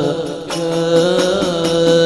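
Male devotional chanting over a loudspeaker: long held notes that bend slowly in pitch, with a brief dip about half a second in.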